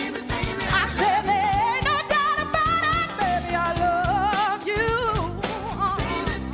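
Woman singing a soul song, belting long held notes with wide vibrato over band accompaniment with a steady beat.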